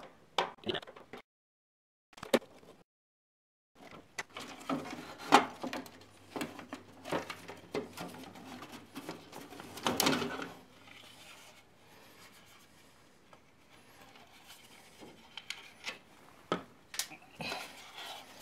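Irregular clicks, knocks and rubbing of a black plastic shroud and its screws being worked loose and pulled out of an RV furnace's access bay. The sound drops out entirely for a few seconds early on, and the loudest clatter comes about halfway through as the cover comes free.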